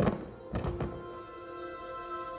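Magic sound effect for a genie granting a wish: a sharp thunk, then a few dull thuds about half a second in, over held music notes.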